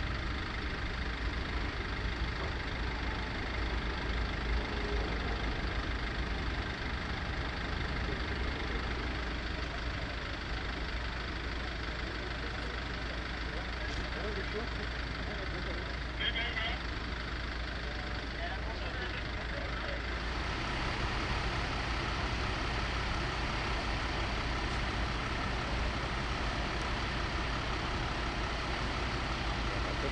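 Heavy vehicle engines idling steadily, a continuous low rumble, with indistinct voices in the background. The background changes at about 20 s.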